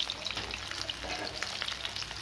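Masala-coated fish pieces shallow-frying in hot oil in a pan: a steady sizzle dotted with many small crackles and pops.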